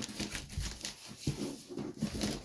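Handling noise as a heavy, shrink-wrapped stack of manga volumes is lifted and moved: soft bumps with faint rustle of the plastic wrap.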